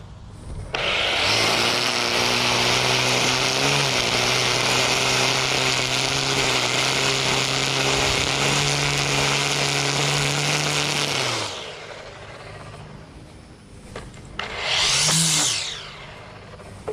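Husqvarna 325iLK battery-powered string trimmer edging grass along a concrete walkway: a steady motor hum under the hiss of the spinning line cutting, running for about ten seconds and then cutting off. Near the end comes a second, brief burst of about a second that winds down.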